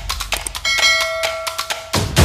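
A bright electronic bell chime, the notification-bell sound effect of a subscribe-button animation, struck once and ringing for about a second before fading.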